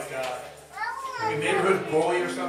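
Children's voices calling and chattering in a large room, with high, swooping rises and falls in pitch in the middle.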